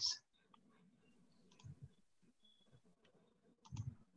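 Near-quiet room tone with a few faint clicks and small knocks, one cluster about a second and a half in and another near the end.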